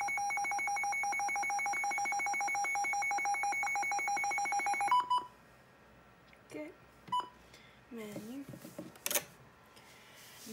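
Weather alert radio's siren test: a loud, steady, rapidly pulsing two-tone alarm that cuts off suddenly about five seconds in, followed by two short beeps.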